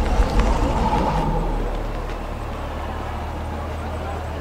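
Steady low rumble of background noise, vehicle-like, somewhat louder in the first second and a half, with a faint whine near the start.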